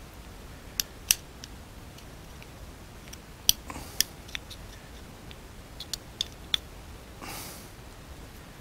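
Screwdriver tip clicking against a small metal enclosure as rubber grommets are pushed into its punched holes: a dozen or so light, sharp clicks at irregular intervals, some in quick pairs.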